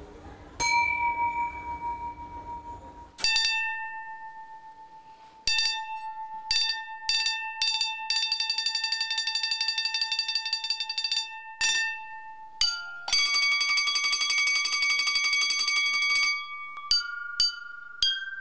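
Thin porcelain bowls struck with a mallet and ringing like bells: a few single strikes that ring out and fade, then fast rolls of quickly repeated strikes that hold a ringing tone, moving to a higher note about 13 s in.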